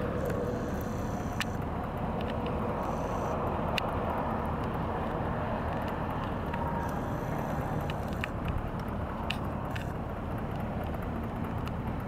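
Steady low rumble of a car engine idling, with a few faint clicks.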